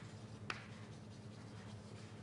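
Faint writing on a board, with one sharp tap about a quarter of the way in, over a steady low hum.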